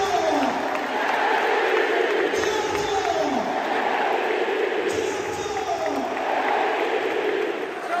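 Large football stadium crowd singing and chanting together, a steady mass of voices with a held melody that repeatedly falls in pitch.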